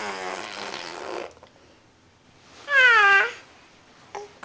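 Baby vocalizing: a breathy, rough sound through the first second, then a short, loud squeal about three seconds in whose pitch dips and rises again.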